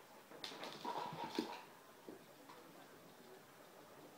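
A few faint, short vocal sounds from a young pet, mostly within the first second and a half.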